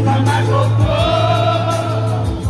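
Amplified male voice of a street singer holding one long sung note with vibrato, starting about half a second in, over backing music with a sustained low bass note.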